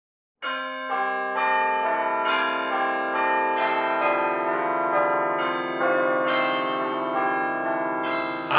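A peal of bells, a new note struck about twice a second and each ringing on under the next. It starts after a brief silence about half a second in.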